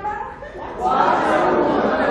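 Speech: a person talking, with other voices chattering in the room.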